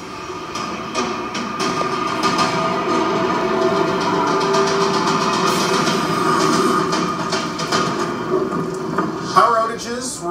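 Strong storm wind blowing steadily, a continuous rushing rumble with a faint sustained hum.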